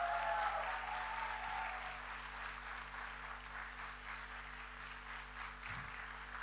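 Audience applauding, loudest in the first couple of seconds and then tapering off.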